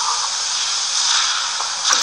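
Steady hiss of radio background noise in a pause of the broadcast speech.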